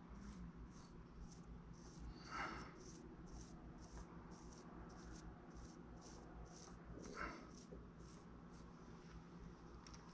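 Near silence: a small brush wet with lighter fluid faintly scratching over oil-based modelling clay in quick small strokes, smoothing its rough areas, with two short breaths about two and seven seconds in.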